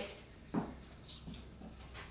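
A skipping rope and single-leg hops on a gym floor: a few soft, irregular taps as the skipping gets going.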